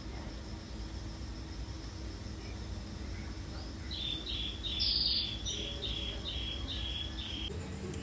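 Steady low background noise, then from about four seconds in a run of short, high, evenly spaced chirps, two or three a second, from a small bird.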